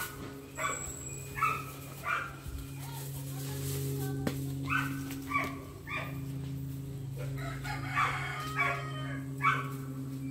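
Short pitched animal calls repeating about once or twice a second over a steady low hum.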